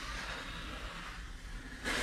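Steel drywall taping knife drawn slowly along a wall joint, scraping wet joint compound over paper tape as it squeezes the mud out from under the tape: a steady soft scrape, with a sharper, louder stroke just before the end.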